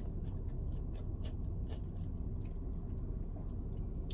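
A person chewing a crispy breaded fried chicken tender: faint, irregular crunches over a steady low rumble.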